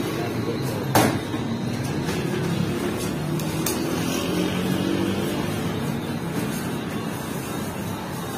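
Steady low mechanical rumble of a working bakery, with a sharp knock about a second in and a lighter one a little before four seconds.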